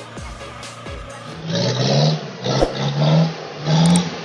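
Music with a beat, then from about a second and a half in, a Mitsubishi dump truck's diesel engine revving in repeated surges, each rising in pitch, about once a second.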